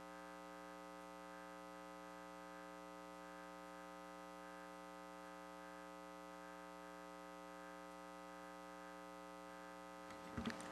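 Faint, steady electrical mains hum: a constant stack of even tones with nothing else over it. It is the sound of the recording feed while the microphone is still not on.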